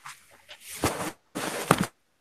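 Two short bursts of rustling noise, each about half a second, coming through a student's open microphone on a video call.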